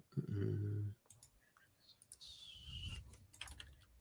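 Scattered computer mouse and keyboard clicks. A short hummed voice sound comes near the start, the loudest thing here, and a brief falling whistle-like tone a little after halfway.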